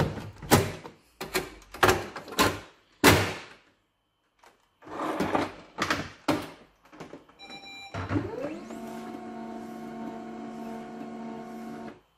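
Plastic clicks and thunks as a toner cartridge is seated in an HP Laser 137 laser printer and its cover shut, the loudest about three seconds in. After a short beep, the printer's motor starts with a rising pitch and runs steadily as the printer warms up with the cartridge back in.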